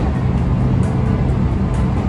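Train running noise heard from inside the carriage, a steady rumble, mixed under background music with sustained tones.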